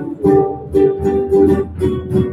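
Live music from a school band: strummed plucked strings on a steady beat, about two strokes a second, over held chords.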